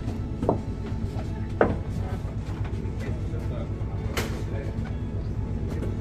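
Steady low drone of a moored motor ship's running machinery, with a few sharp clacks and knocks about half a second, a second and a half and four seconds in, and voices murmuring.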